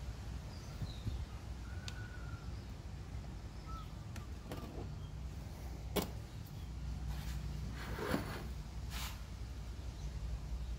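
Handling noise from a vending-machine vend motor assembly being worked on by hand: a few sharp clicks and taps, one about six seconds in and two more near the end, over a low steady hum.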